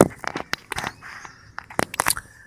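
Handling noise from a Canon 550D DSLR being moved by hand and set on a wooden table: a run of sharp clicks and knocks, the loudest right at the start and another strong one near the end.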